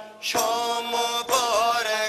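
Singing in a Wakhi song: a voice holds long, wavering notes over music, with a phrase starting about a third of a second in.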